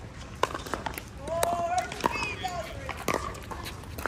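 Pickleball paddles hitting the hard plastic ball in rallies: sharp pops at uneven intervals, some from neighbouring courts, with people's voices in the middle.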